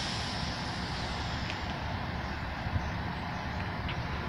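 Metro-North electric commuter train moving along the platform track: a steady rumble and hiss of wheels on rail and traction equipment.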